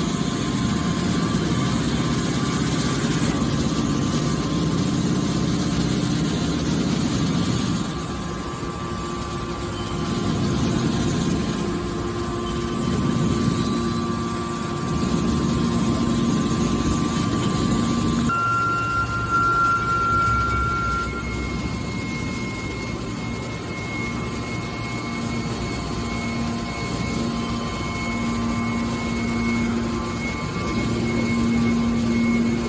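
Horizontal hydraulic scrap metal baler running, its hydraulic pump working under changing load as the press pushes out a compacted bale of metal scrap. The sound shifts about 8 and 18 seconds in, and a thin steady whine sets in after the second shift.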